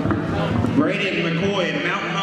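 Speech: men's voices echoing in a gymnasium, with a man's voice coming in clearly about a second in.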